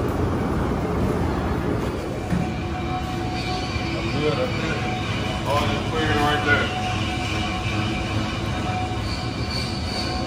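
Steady hum and whine of tire-shop machinery, with a higher whine setting in a few seconds in and people talking faintly.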